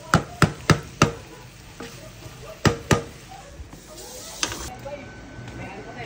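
Wooden spatula knocking sharply against a stainless steel frying pan as it breaks up corned beef: four quick knocks in the first second, then two more a little under three seconds in.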